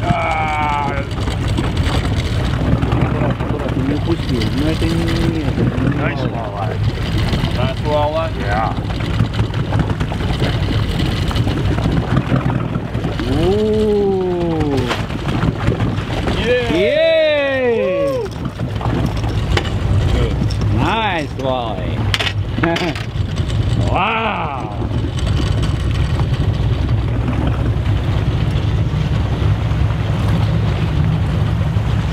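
A boat's engine runs steadily under a handful of short, excited shouts from the people on board as a fish is reeled in and netted. The loudest shout comes about 17 seconds in.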